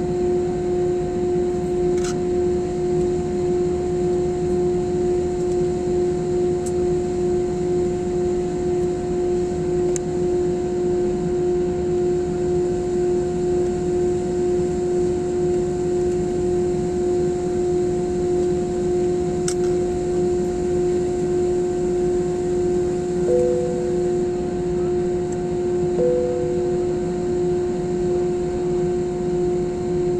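Airbus A320 cabin noise on the ground: a steady drone of idling jet engines and cabin air, with a constant hum and no build-up of thrust. Two short tones sound near the end.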